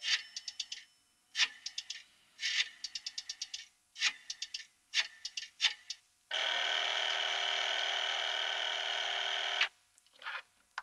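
Rotary payphone dial clicking out five digits, each a quick run of evenly spaced clicks. About six seconds in it gives way to a steady telephone ring for about three seconds that cuts off suddenly: the call coming in at a hotel switchboard.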